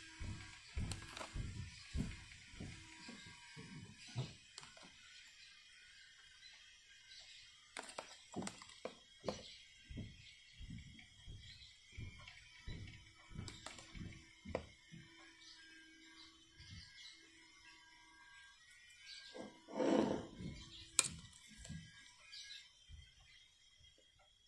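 Faint, scattered clicks and light knocks of a plastic spoon handled against a plastic plant pot while water is spooned onto the soil. A louder, longer sound comes about twenty seconds in.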